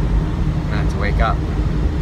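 Steady low rumble of engine and road noise heard from inside a moving car's cabin.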